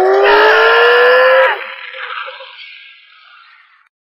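Several voices screaming together, held and rising slowly in pitch, cut off suddenly about a second and a half in, leaving a fading echo.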